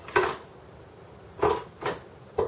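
Three short clatters of small objects being picked up and set down on a workbench, one just after the start, one about a second and a half in and one just before the end.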